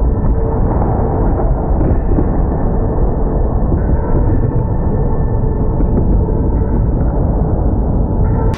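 Slowed-down sound of a stack of heavy weights collapsing off a broken glued joint: a continuous, muffled deep rumble with no separate impacts.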